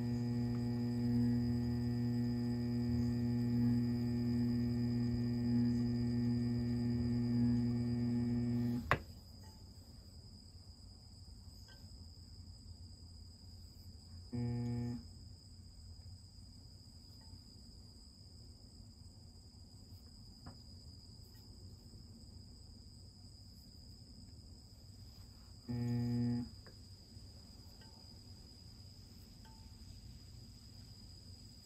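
Electric pottery wheel motor humming steadily while the wheel spins, then switched off with a click about nine seconds in. The motor is run again twice in short bursts of about half a second, once near the middle and once late on, as the wheel is nudged round.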